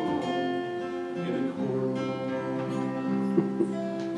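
Acoustic guitar strummed on its own between sung lines, its chords ringing on with fresh strums a little over a second in.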